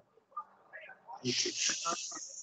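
A hiss lasting about a second, starting a little past halfway, over faint talk.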